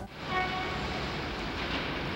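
Steady city traffic noise, a rumble and hiss, with a few faint steady tones in the first second.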